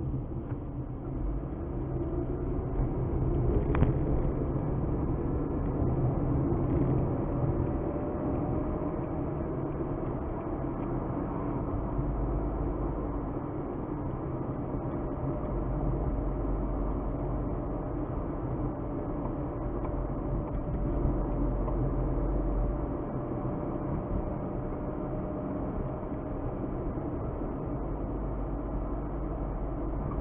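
Car driving along a road, heard from inside the cabin: steady engine and tyre rumble, with a faint tone that rises slowly in pitch over the first several seconds. A single short click comes about four seconds in.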